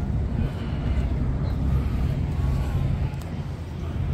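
Steady low rumble of harbourfront outdoor ambience, with faint distant voices of passers-by.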